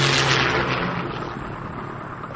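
Cartoon sound effect of airplanes flying by: a steady engine drone under a rushing noise that fades away.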